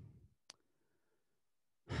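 A man's voice trailing off into a breath after a drawn-out "um", a single faint click about half a second in, then near silence until he draws breath to speak again near the end.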